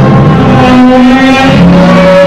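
Loud orchestral music with several notes held steadily together, low and high.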